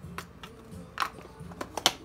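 A few small, sharp clicks and taps from handling a roll of electrical tape and setting it down on the work bench, the sharpest near the end.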